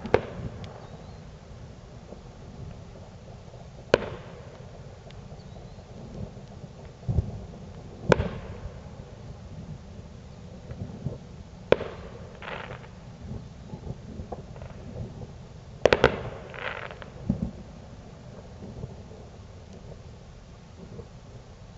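Aerial fireworks going off: single sharp bangs every few seconds, then a quick run of three bangs about three-quarters of the way through. Some bangs are followed by a brief crackle.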